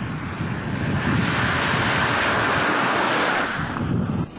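A Moskvitch Aleko driving past close by: a rush of tyre and engine noise that builds over the first two seconds and dies away near the end.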